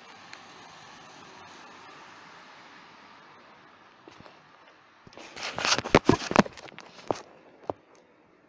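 Steady low hiss, then a dense burst of sharp crackling clicks lasting about two seconds, with one more click near the end.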